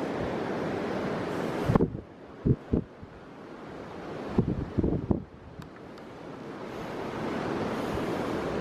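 Wind buffeting the microphone as a rushing noise that cuts off suddenly about two seconds in and builds back up over the last couple of seconds. A few low thumps come in the quieter middle stretch.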